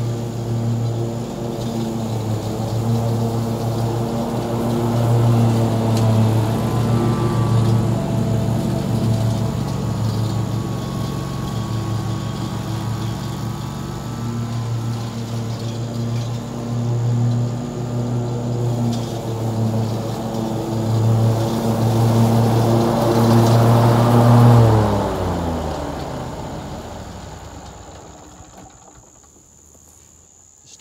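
Hustler FasTrak Super Duty zero-turn mower's engine running steadily under load while mowing, then shut off about three-quarters of the way through: its pitch falls and it winds down to a stop over the next few seconds.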